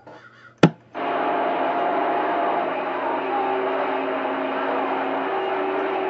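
CB radio on channel 28: a sharp click about half a second in as the transmitter is unkeyed, then the receiver opens to steady band static with several steady whistling tones running under it.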